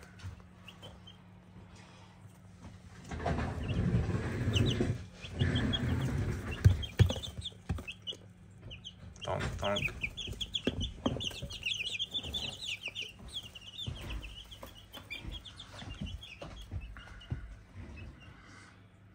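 Young chicks peeping, a run of quick, short, high chirps that gets denser and busier in the second half. In the first half there are bouts of rustling and a few sharp knocks.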